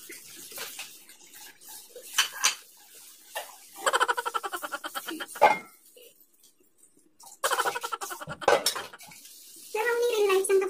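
Stainless steel pots and dishes clinking and clanking as they are washed and moved about at a kitchen sink, with a sharp clank about five and a half seconds in and another near the end.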